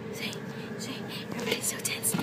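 Soft whispering in short hissy breaths, with no clear voiced words, over a steady faint hum.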